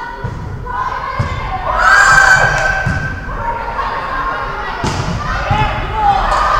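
Volleyball being played in a rally: several dull thuds of hands and forearms striking the ball, mixed with players calling out, with one loud shout about two seconds in.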